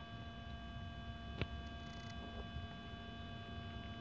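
Faint steady electrical hum made of several fixed tones, with a single short click about a second and a half in.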